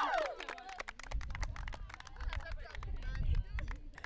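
Light, scattered clapping from a small group: irregular sharp claps throughout, over a low rumble and faint distant voices. A man's voice on a PA tails off at the very start.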